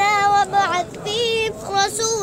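A young boy's high voice chanting Quranic recitation in a melodic style, holding long drawn-out notes that waver in pitch, in two phrases.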